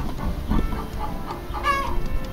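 Chickens clucking in short pitched calls, the loudest near the end. Under them is a soft rustle of loose soil being sifted by gloved hands.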